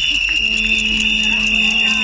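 Street-protest crowd noise dominated by a loud, steady, shrill high-pitched tone held throughout. A second, lower steady tone joins about half a second in and carries on.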